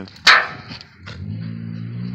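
A dog lets out one short, loud, sudden sound about a quarter second in while tugging on a hide. A steady low hum sets in about a second in.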